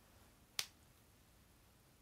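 A single sharp click just over half a second in, against near silence.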